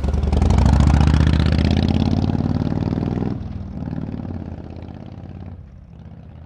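Motorcycle engine running with a rapid pulsing exhaust note, loudest at first. It drops off sharply about three seconds in, swells briefly once more, then dies away.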